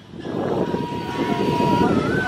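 Low rumble and crowd voices beside a ride-on live-steam miniature steam locomotive that is fired up. A thin steady tone is held for about a second in the middle.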